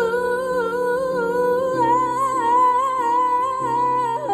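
A woman singing one long held note with vibrato into a microphone, over chords on a Yamaha Motif XS8 keyboard that change beneath it every half second or so. The held note breaks off and steps down just after the end.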